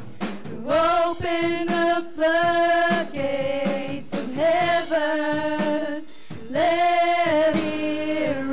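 Female vocalists singing a worship song into microphones, in long held notes sung in phrases with short breaths between.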